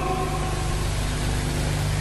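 A steady low hum with an even hiss over it.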